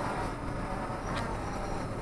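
Strong gusting wind buffeting the camera's microphone: a steady low rumble with a light hiss over it.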